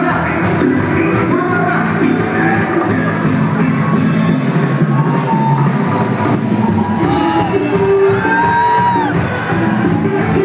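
Live Latin pop band playing loudly in a large hall, with sung vocals over the band and the audience yelling and whooping.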